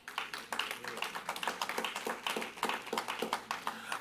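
Scattered clapping from a church congregation, faint and irregular, with a few quiet voices underneath.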